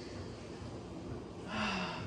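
A woman's slow, quiet breathing, with a louder, slightly voiced breath about one and a half seconds in.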